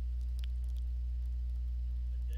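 Steady low electrical hum with a few faint overtones, running at an even level.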